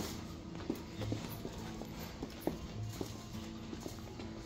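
High-heeled boots clicking on a hard tiled floor, irregular steps, with music playing underneath.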